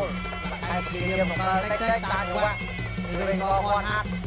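Traditional Khmer boxing ring music: a reedy sralai oboe plays a wavering melody over a steady, repeating drum pattern that accompanies the fight.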